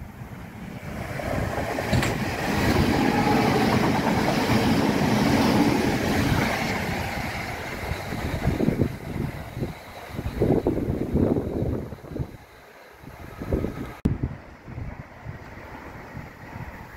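Electric multiple-unit train running through the station: its wheel-and-motor noise swells to a loud, steady rumble for several seconds, then fades away. In the second half, irregular gusts of wind buffet the microphone.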